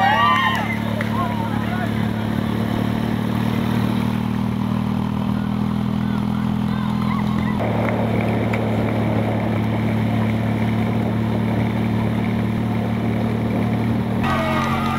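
Motorcycle engine running steadily at cruising speed, mixed with wind and road noise. Its low drone shifts a little and gets noisier about halfway through.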